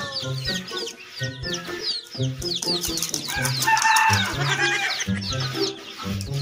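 Young chicks peeping continuously: many rapid, short, high chirps that fall in pitch, overlapping one another. Background music with a steady low beat plays underneath.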